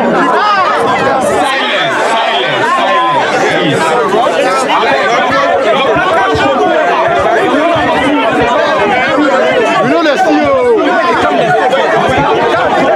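Speech: a man talking loudly into a hand-held microphone over the chatter of a dense crowd, with several voices overlapping.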